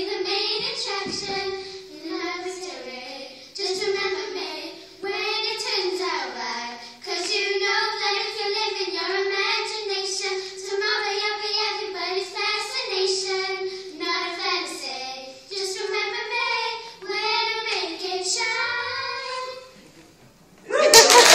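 Young girls of about ten singing a song together in unison, with no instrument heard. The song ends just before the close.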